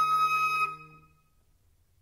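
Concert flute holding a long, steady high note over lower sustained accompaniment tones. Both stop together about two-thirds of a second in, leaving near silence.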